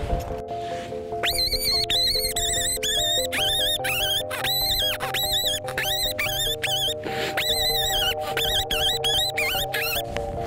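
Fox call being worked: a run of short, wavering high squeals starting about a second in, made to draw a fox in, over background music with held notes.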